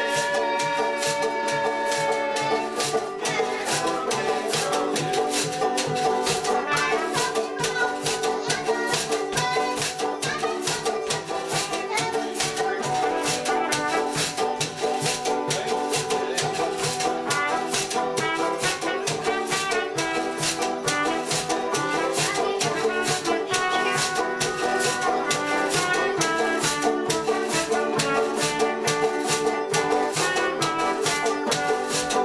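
Live band playing an instrumental passage: trumpet over a strummed guitar, with a fast, steady rattling percussion beat.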